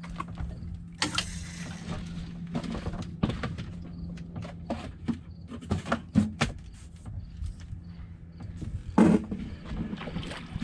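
Irregular knocks and clicks over a steady low hum on a boat, with the loudest knock near the end.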